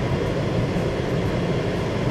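Steady in-cabin noise of a car idling, a low engine hum under an even hiss.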